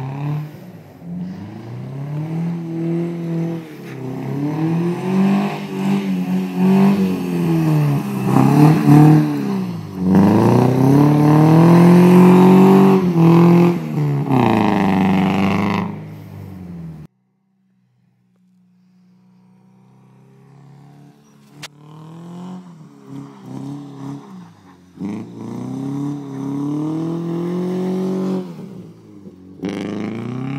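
Non-turbo 2-litre Subaru Impreza's flat-four engine, running a bit rich, revving up and down again and again as it is driven hard on snow. The sound cuts out abruptly about halfway through, then comes back faint and grows louder.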